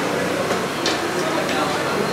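Busy eatery din: a murmur of background voices, with a few short clinks of crockery and utensils at the noodle stall.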